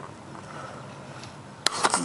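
Low hiss, then about one and a half seconds in a sharp tap followed by a brief scrape as the camera is pressed against the wire mesh screen over the glass.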